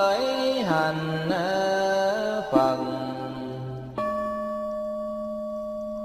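A monk's voice chanting in melodic Vietnamese Buddhist style, drawing out the end of a Buddha's name with pitch glides over a steady low drone. About four seconds in the voice stops and a bell-like ringing tone starts suddenly, fading slowly.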